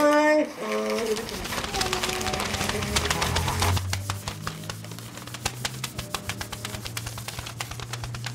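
Many sheets of paper shaken, flapped and crumpled together, a dense crackling rustle. A voice sounds briefly at the start, and a low steady tone joins from about three seconds in.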